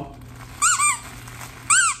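Squeaker inside a P.L.A.Y. Barking Brunch chicken-and-waffles plush dog toy squeezed by hand: two quick squeaks about half a second in and another near the end, each rising and falling in pitch.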